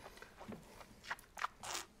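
A few faint, short mouth and breath noises from tasters working a sip of red wine.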